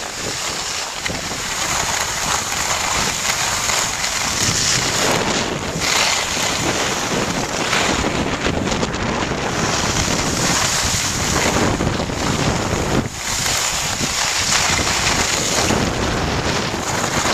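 Wind rushing over the microphone of a skier moving downhill, with skis hissing and scraping over packed snow. The noise is loud and steady, swelling and easing in strength.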